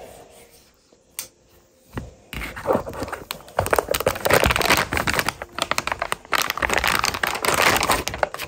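Clear plastic bag around a spool of PLA filament being cut open and pulled off. The thin plastic film crinkles and rustles steadily from about two seconds in, after a single click about a second in.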